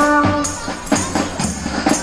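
Children's hadrah ensemble: jingled hand tambourines shaken and struck in a steady rhythm over deep bass-drum beats. A sung line ends about half a second in, leaving the percussion alone.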